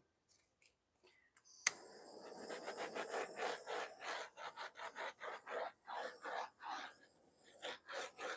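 Butane chef's torch clicked alight with one sharp click, then its flame hissing in quick pulses, about three a second, as it is passed over wet epoxy resin to pop surface bubbles.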